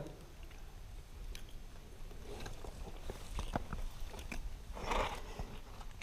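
Scattered small clicks and scuffs of a climber's hands and gear against the rock, picked up close by a head-mounted camera, with a short burst of breath about five seconds in.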